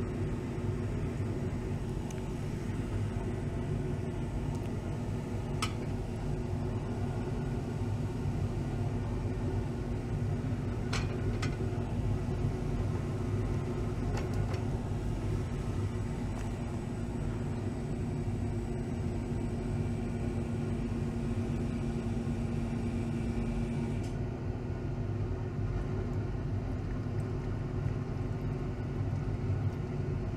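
Vacuum pump running steadily under a Büchner-funnel vacuum filtration, a low rumble with a hum that cuts off about 24 seconds in. A few faint glassware clinks fall in between.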